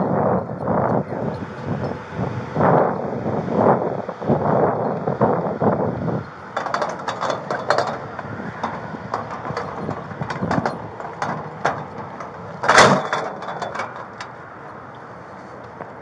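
Scuffing and knocking of a body-worn camera rubbing against the wearer's clothing as he moves, with rough bursts of noise at first, then a run of short clicks, and one loud knock about 13 seconds in.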